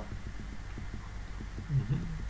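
Faint, quick low ticking over a steady low hum, with a short murmur of a man's voice near the end.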